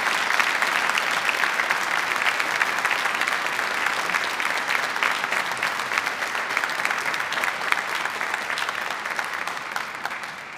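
Audience applauding: dense clapping that holds steady, then slowly thins toward the end.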